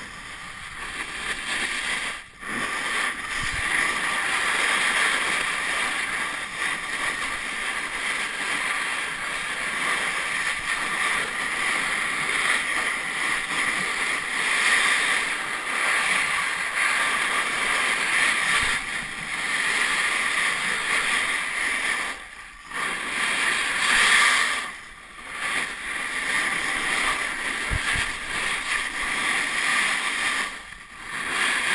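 Steady hiss of a fast glide over snow on a downhill run, dropping out briefly three times.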